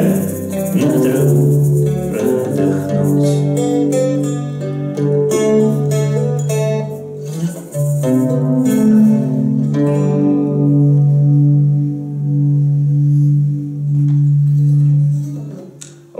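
Acoustic guitar playing an instrumental passage of held low notes under picked higher notes, which dies away just before the end.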